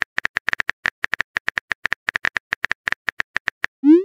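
Rapid keyboard-typing click sound effects of a texting-story chat app, about nine clicks a second, followed near the end by a short rising swoosh as the message is sent.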